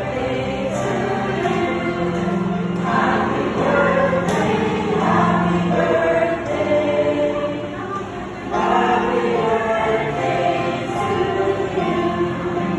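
A group of voices singing a song together, with long held notes.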